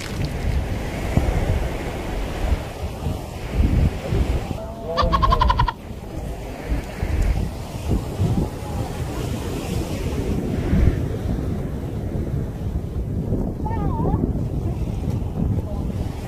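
Wind buffeting the microphone in gusts over the wash of the sea, with a brief faint call of a voice about five seconds in.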